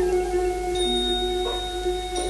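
Thai piphat mai nuam (soft-mallet) ensemble playing, with struck mallet-percussion notes and a long held melodic note over them, and a light strike about one and a half seconds in.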